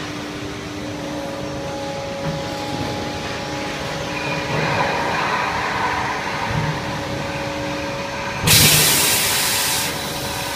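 Pneumatic suction-cup sheet loader and press line running with a steady machine hum and held tones. Near the end comes a sudden loud hiss of compressed air lasting about a second and a half, then cutting off.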